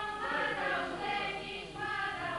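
A group of voices singing a Bulgarian folk song together, with held notes that slide from one pitch to the next.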